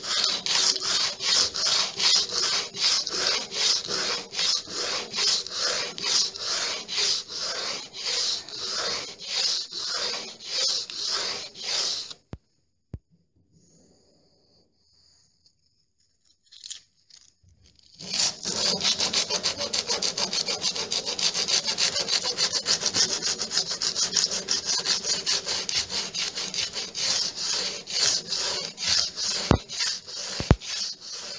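Hand sanding of painted wood with sandpaper, with rhythmic back-and-forth rubbing strokes at about two a second. The strokes stop for a few seconds midway, then start again faster and denser.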